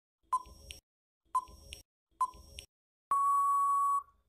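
Quiz countdown timer sound effect: three short beeps about a second apart, then one long steady beep near the end signalling time out.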